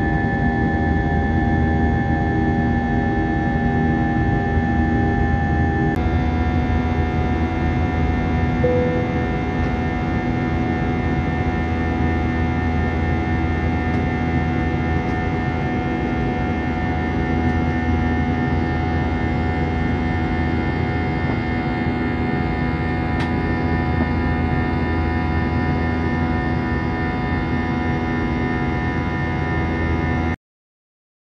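Airliner cabin noise in flight: the engines' steady noise with several held whining tones, whose pattern shifts abruptly about six seconds in.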